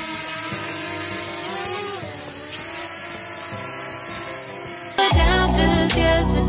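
Small quadcopter drone's propellers whining in flight; the pitch dips and rises briefly as it moves. About five seconds in, much louder background music with a beat cuts in.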